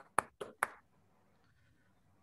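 A few sharp hand claps, a few tenths of a second apart, thanking a speaker; they die away within the first second.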